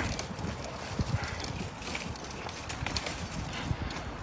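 Footsteps on a concrete sidewalk, soft thumps about two a second, over the low rolling rumble of a pushed four-wheeled pet stroller.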